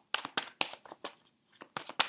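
Tarot cards being shuffled and handled by hand: a quick, irregular run of sharp card snaps and slaps.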